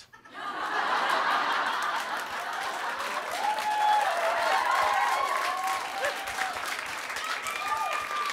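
Audience laughing and applauding, with voices laughing over the clapping. It starts suddenly and slowly dies down.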